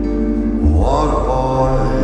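Live band music with electric guitars: sustained chords over a low drone, and a rising swell of pitched sound from a little under a second in.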